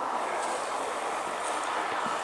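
Steady, even outdoor background noise with no distinct events.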